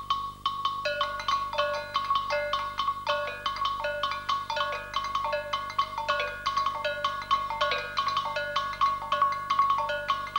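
Tuned mallet-percussion music: a single high note struck at a steady pulse, joined about a second in by lower and higher ringing notes in a repeating interlocking pattern.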